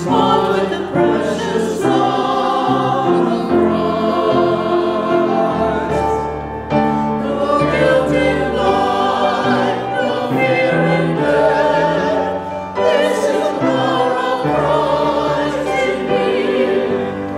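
A small mixed church choir of men and women singing a sacred anthem in parts. Underneath, an accompaniment holds low bass notes that change every second or two.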